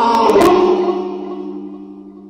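The last held chord of a sung folk song, voices and instruments ringing on one chord and fading away.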